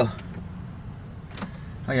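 Quiet car cabin with the engine not yet started, and one short click about one and a half seconds in.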